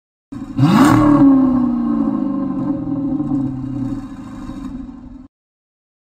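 Car engine rev used as an intro sound effect: one sharp rev with a rushing noise, then the pitch sinks slowly as it settles. It cuts off suddenly about five seconds in.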